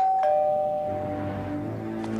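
Two-tone ding-dong doorbell: a higher chime followed at once by a lower one, both ringing on and fading. Low held music notes come in about a second in.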